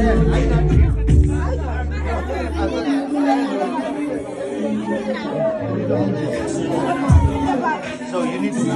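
Guests chattering over music in a large hall. The music's deep bass drops out about three seconds in.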